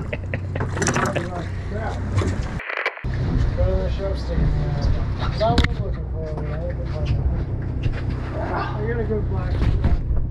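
A boat engine running with a steady low hum, under fabric rubbing on the microphone and distant talk. All sound drops out for a moment about three seconds in.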